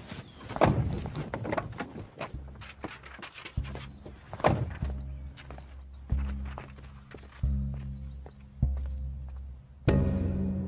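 Film soundtrack: a low pulsing music note that repeats about every second and a quarter, starting about two seconds in. Knocks and thuds fall over it, most of them in the first half.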